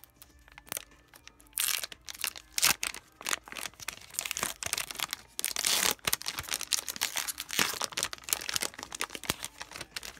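Foil wrapper of an Upper Deck hockey card pack being crinkled and torn open by hand: a dense run of crackles that starts about a second and a half in, loudest around the middle.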